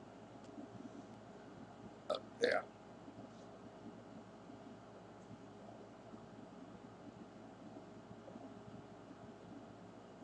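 Near silence: faint steady room tone and recording hiss, with a man saying a single "Yeah" about two seconds in.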